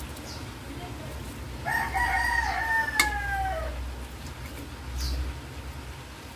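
One long bird call of about two seconds, falling in pitch at its end, with a sharp click partway through and faint clicks around it.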